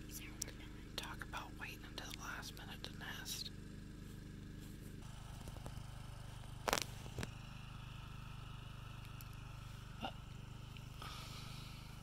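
Soft whispering for the first few seconds over a steady low hum, then a single sharp knock about halfway through and a fainter one later.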